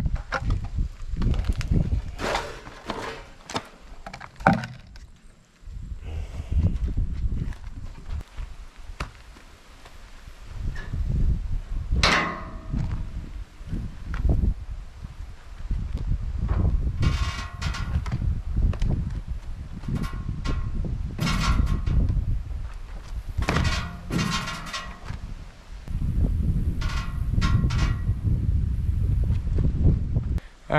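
Wind rumbling on the microphone, with scattered knocks and clanks from work on a utility trailer's tongue and hitch as it is unhitched and propped on a wooden post. Several short high squeaks come through in the second half.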